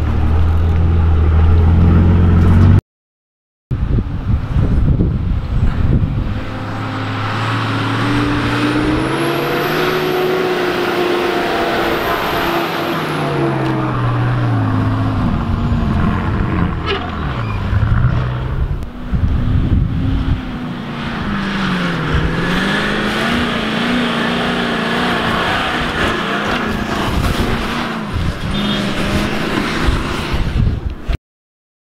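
Four-wheel-drive engines revving up and down under load as the vehicles climb a soft sand dune track, the engine note rising and falling repeatedly. Before that, a low steady engine note as a vehicle drives slowly through a sandy creek bed, broken by a brief cut to silence about three seconds in.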